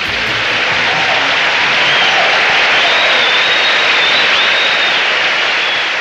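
Concert audience applauding and cheering, with a few high whistles over the clapping.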